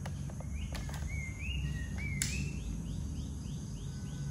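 A bird calling: a couple of rising whistled notes, then a quick run of short rising notes, over a low steady hum. A sharp click sounds about two seconds in.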